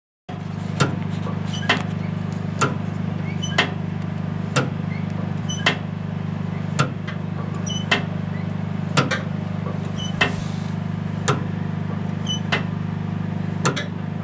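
Four-cylinder carburetted engine idling steadily, with a sharp click about once a second, the clicks spacing out slightly toward the end.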